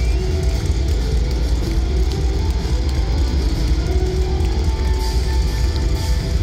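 A live rock band playing through a festival PA, heard from within the crowd. The sound is a dense, bass-heavy mix of band music with guitar, and it holds steady throughout.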